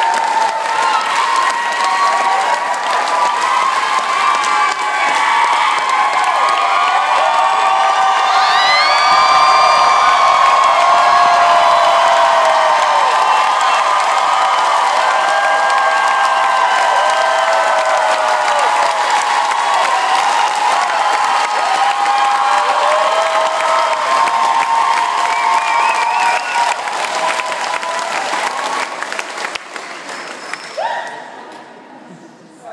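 Large crowd cheering, shouting and applauding in a large stone hall, many voices at once, with a high whoop about eight seconds in. The noise dies down near the end.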